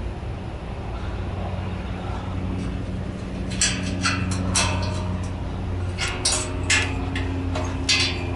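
Volvo VNL860 semi truck's diesel engine idling with a steady low hum. Over it, from about halfway on, a run of sharp, irregular clicks and taps.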